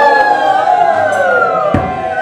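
Bengali kirtan music: steady held notes with a melody line gliding downward in pitch, and a single drum stroke near the end.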